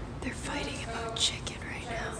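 Whispered speech: a woman whispering close to the microphone.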